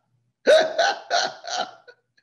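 A person laughing loudly in about four evenly spaced 'ha' bursts, starting about half a second in.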